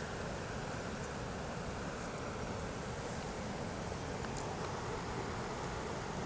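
Steady outdoor background noise: an even hiss with a low rumble underneath, unchanging throughout, with no distinct events.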